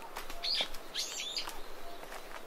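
Short bird chirps, with a brighter burst of several calls about a second in, over footsteps on a dirt forest path.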